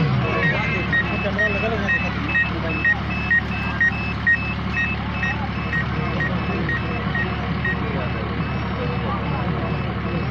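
Electronic beeper sounding short high beeps at two alternating pitches, about two a second, which stop about eight seconds in. A steady low hum and crowd chatter run underneath.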